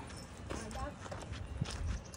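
Footsteps on a rocky downhill path: a few sharp knocks of shoes on stone over a low rumble, with faint voices in the background.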